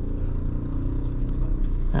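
Honda Brio's four-cylinder petrol engine running at low revs in first gear, a steady low hum heard inside the cabin as the car creeps slowly.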